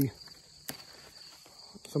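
Steady, high-pitched chorus of field insects trilling evenly, with one sharp click about two-thirds of a second in.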